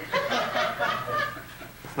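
A man laughing: a quick run of short chuckles that dies down about a second and a half in.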